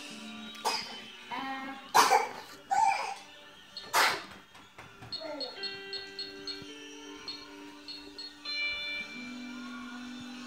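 A few sharp plastic clacks in the first half, the loudest about two and four seconds in, as plastic toy dishes are handled. Through the second half, a simple electronic tune of held notes stepping from one pitch to the next.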